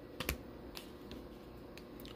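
Baseball trading cards handled in a stack, a card being slid off and tucked behind the others: a few light clicks and card-on-card rubs, the two sharpest close together near the start.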